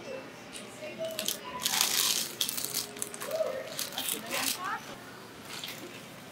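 Plastic-wrapped goods rustling and rattling as they are handled at a self-checkout, with a cluster of sharp crinkles about two seconds in and another around four and a half seconds, over indistinct voices.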